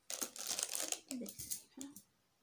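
Plastic wrapping crinkling and rustling as bangle sets are handled and lifted out of their packets, in a dense crackle that stops just before the end.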